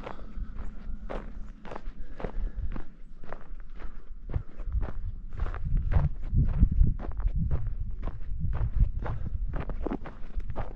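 Footsteps crunching on a snow-covered, icy gravel driveway, about three steps a second. A low rumble builds under them from about five seconds in.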